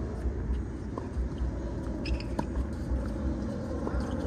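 Tennis ball being hit back and forth in a doubles rally: three sharp pops about a second and a half apart, over a steady low rumble.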